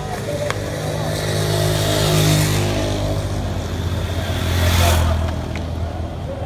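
A motor vehicle engine passing close by, swelling to a peak about two seconds in and again near five seconds before fading.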